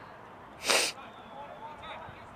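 A single short, loud burst of breath noise close to the microphone, a little over half a second in, with the sharp hiss of a sneeze.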